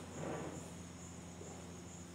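Faint, steady, high-pitched insect-like chirring that sounds like crickets, with a soft brief sound in the first half-second.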